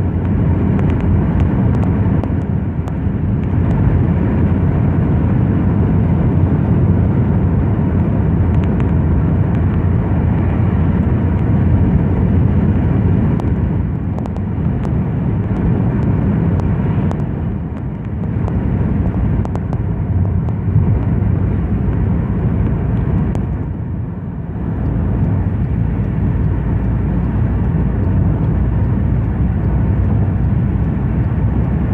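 Steady low rumble of a car's engine and tyres heard from inside the cabin while driving at highway speed, easing off briefly twice in the second half.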